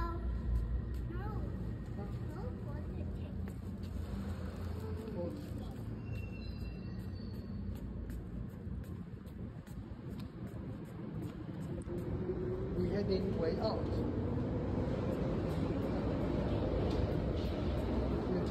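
Underground station ambience: a steady low rumble that swells louder from about two-thirds of the way in, with a child's short vocal sounds now and then, one a brief "oh".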